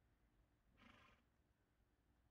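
Near silence: faint background hush, with one faint, brief noisy sound about a second in.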